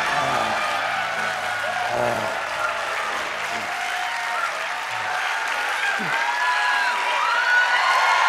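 Studio audience laughing and applauding, with scattered voices calling out over it.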